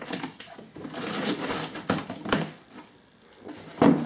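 A long cardboard shipping box being opened by hand: packing tape ripped off and the cardboard flaps scraped and pulled open, in a few rasping bursts with a brief lull about three seconds in.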